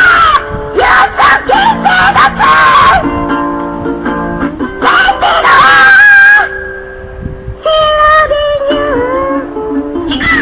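A woman belting a song in a strained, wailing voice over a strummed guitar, with one long loud held note about five seconds in and a falling phrase near the end.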